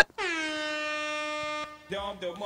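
Air horn sound effect marking a super chat donation: a single blast of about a second and a half, dipping slightly in pitch at the start, then holding steady and cutting off abruptly. Faint speech follows near the end.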